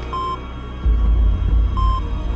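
Short electronic beeps from a radar display, one near the start and one near the end, repeating about every two seconds over a tense film score; a deep low rumble swells in a little under a second in.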